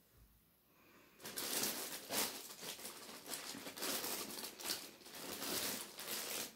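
Packaging crinkling and rustling as a parcel is handled and opened, starting about a second in and going on unevenly after a brief quiet.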